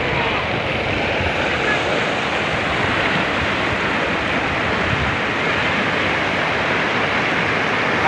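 Steady rushing of a river in flood, a wide sheet of fast muddy floodwater pouring over fields.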